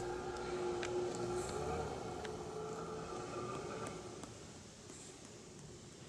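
A distant engine's low, steady hum that rises slightly in pitch about two seconds in and then slowly fades, over faint outdoor background noise with a few light ticks.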